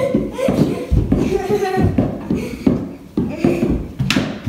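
Balls being dribbled on a hardwood floor, bouncing with irregular low thuds, over children's voices.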